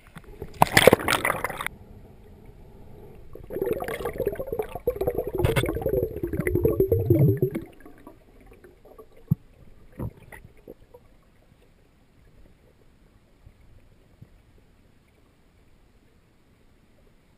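Water splashing against a camera as a freediver ducks under the surface, then muffled underwater gurgling and bubbling for about four seconds. Two faint knocks follow, then a quiet underwater hush.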